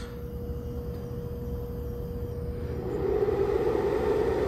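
Grid-tie inverter running from lithium scooter battery packs as its load is pushed up toward 30 amps: a steady hum that turns into a louder, rougher buzz about three seconds in.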